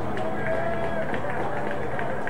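Outdoor ambience at a football field: steady rumble and hiss of wind on the camcorder microphone, with faint distant voices.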